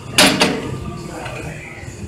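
Two quick, sharp clanks close together from a Hammer Strength MTS Iso-Lateral Biceps Curl machine as it is worked through short reps.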